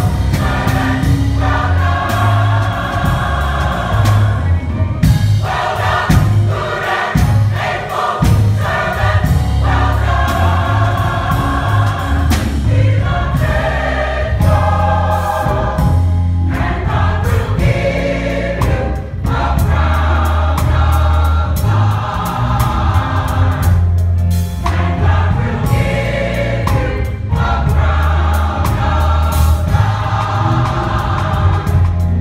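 Gospel choir of mixed men's and women's voices singing a song, phrase after phrase.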